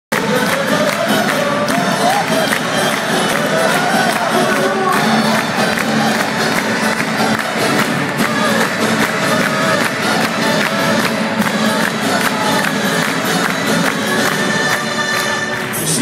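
Live music from an acoustic band and choir with hand percussion, heard from inside a loud concert audience that cheers and sings along.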